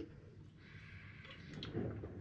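Faint sounds of a person drinking from an aluminium drink can, sipping and swallowing, with quiet room tone behind.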